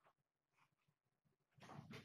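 Two young tabby kittens fighting: near the end a sudden burst of hissing and growling as they scuffle.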